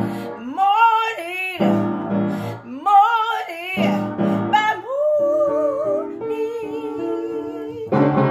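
A woman singing with vibrato while accompanying herself on an acoustic upright piano with sustained chords. About five seconds in she holds one long, wavering note over the chords.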